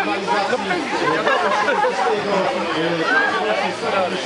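Several people talking at once: continuous crowd chatter with no clear words.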